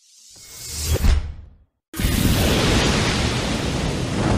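Editing sound effects: a whoosh that swells to a peak about a second in and cuts off, then after a brief gap a loud, steady rush of noise.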